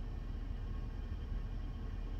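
Steady low rumble with a faint hiss: background noise inside a car.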